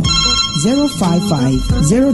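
A telephone ringtone sound effect: a steady, high electronic ring that stops just before the end, over background music and a voice.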